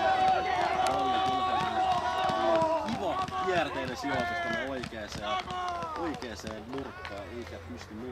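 Several voices shouting and cheering over one another after a goal, starting with one long held shout that ends about two and a half seconds in, then shorter calls that die down toward the end.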